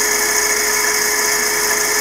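Small three-phase electric motor coupled to a larger three-phase motor, running steadily from a variable-frequency drive: an even electrical whine with several steady high-pitched tones over a hiss.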